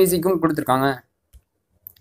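A person speaking for about the first half, then a pause with a faint short click.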